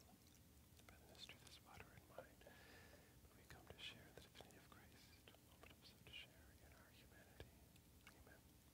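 Near silence in a quiet church, with a faint whispered prayer and a few small clicks and clinks of altar vessels as the chalice is prepared.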